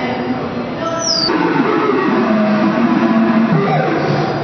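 Pitched, music-like tones that hold and shift in pitch, with a short high falling glide about a second in, over background voices.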